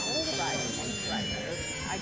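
Overlapping chatter of voices in a large gym hall, with floor-exercise routine music playing underneath.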